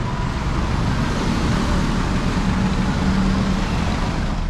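Tow truck's engine running as it pulls up at the kerb, over steady street traffic noise.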